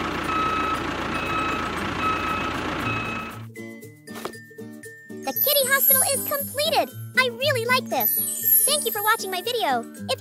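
Background music for a children's video. For the first three seconds a hissing noise carries four short, evenly spaced beeps. From about five seconds in, a high, child-like voice sings over the music, louder than the beeps.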